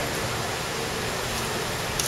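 Steady background hiss with no distinct events.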